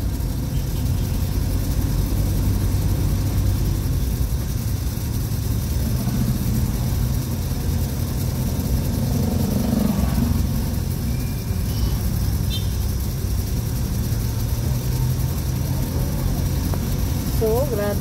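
Vehicle engine running, heard from inside the cabin as a steady low rumble.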